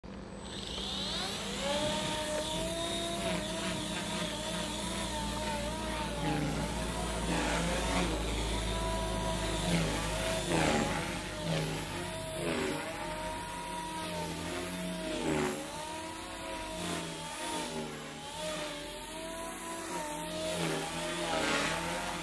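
Walkera V120D02S micro RC helicopter's motor and rotor whine, spooling up in the first couple of seconds and then rising and falling again and again as it is flown.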